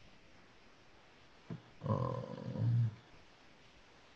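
A man's low, drawn-out 'oh', lasting about a second and coming about two seconds in, over quiet room tone; a short click comes just before it.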